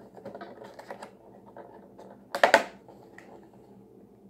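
A clear plastic takeout clamshell being handled and opened, ticking and clicking, with one loud plastic crackle about halfway through.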